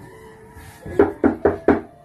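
Four quick knocks on a bedroom door, evenly spaced at about four a second, starting about a second in.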